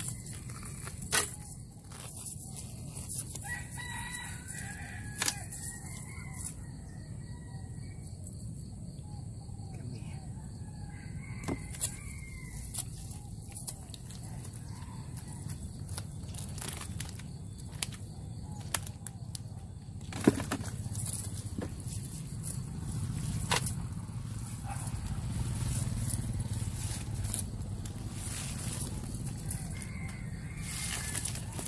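A rooster crowing in the background: two long crows in the first half and another starting near the end. Scattered sharp clicks and taps come from fish being picked out of a cast net with a weighted chain.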